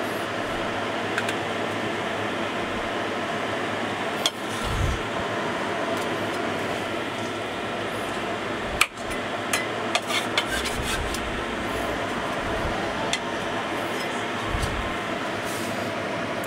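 A cleaver knocks and taps on a wooden chopping board a few times as large prawns are cut open and handled, with a small cluster of taps in the second half. A steady fan-like hum runs underneath.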